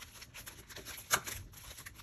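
Rustling of ribbon and garter being handled, with one sharp click about a second in from a desk stapler driving a staple through the garter into the round backer.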